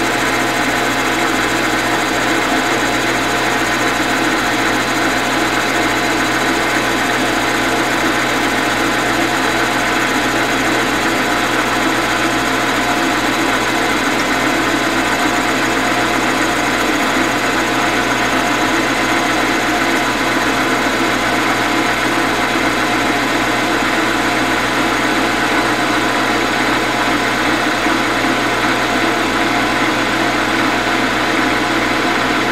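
Metal lathe running steadily while facing an aluminum workpiece, the tool power-fed across the face and shaving off chips. The motor and gearing give an even hum with a constant whine that does not change.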